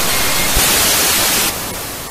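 Television static hiss, the sound of a glitch effect on a logo card. It is a loud, steady hiss that drops in level about a second and a half in and starts to fade.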